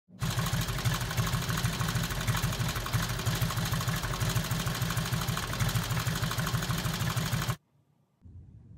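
A loud, steady mechanical running sound with a fast, even pulse, starting suddenly just after the start and cutting off abruptly about seven and a half seconds in.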